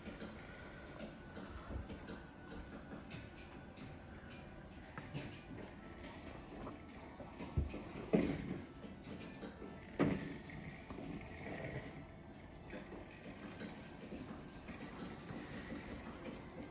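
Faint steady rain noise, with a few soft knocks about eight and ten seconds in.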